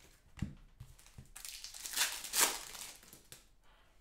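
Glossy trading cards rustling and sliding against each other as a stack is flipped through by hand, with a light knock about half a second in and two louder swipes around the middle.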